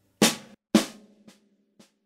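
Snare drum struck four times with drumsticks, about half a second apart: two loud strokes, then two much softer ones, each with a short ring. It is the left-right-left-left group of a paradiddle played slowly, with the accent moved off the first note.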